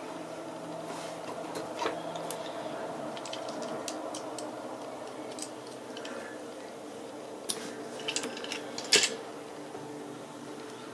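Small clicks and taps of drilled bone pieces, claws and metal pliers being handled while they are strung onto a cord. A few come about two seconds in, and a cluster comes near the end, the loudest a sharp click. A steady low hum runs underneath.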